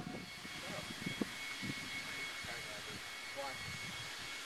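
Quiet steady background noise with a few faint, distant voices.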